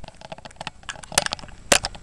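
Handling noise from an arm and hand brushing against and bumping the camera: a run of irregular rustles and small clicks, with two louder knocks, one about a second in and one near the end.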